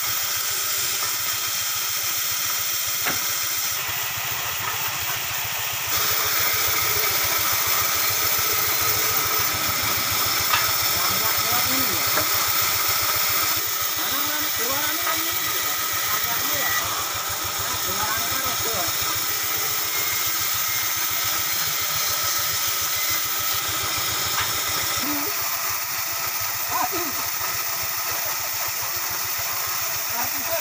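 Woodworking band saw running and cutting through timber, a steady motor hum with the hiss of the blade in the wood. It grows louder about six seconds in and eases back near the middle.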